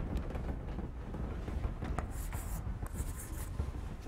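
Chalk drawing on a blackboard: two short bursts of strokes about two and three seconds in, over a low steady room hum.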